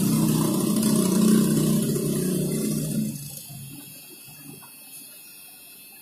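A steady mechanical hum from a motor or engine, fading out about three seconds in.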